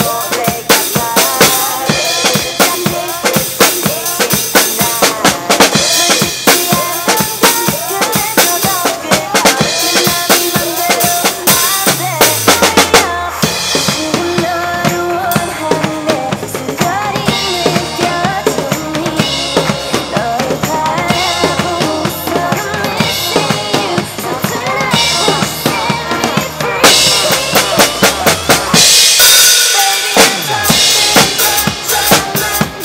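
Acoustic drum kit played live along to a pop backing track: busy kick, snare and cymbal playing. About twelve seconds in a falling sweep leads into a sparser stretch with less cymbal, and heavy cymbal crashes come back in near the end.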